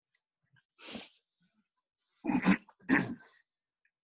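A short sniff, then a person clearing their throat twice, in two short loud bursts.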